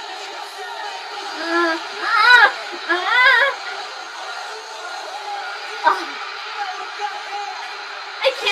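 A woman's high-pitched excited squeals, twice in the first few seconds, the second longer, over a steady wash of concert crowd noise and music. A short click near six seconds.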